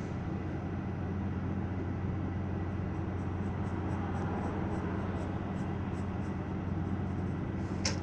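Pencil drawing on sketchbook paper: faint, short scratchy strokes over a steady low hum.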